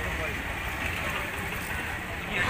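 Steady outdoor street background noise with a low rumble and faint voices in the distance.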